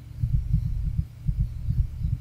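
Computer keyboard typing, each keystroke picked up as a dull, low thump, several a second in an uneven run.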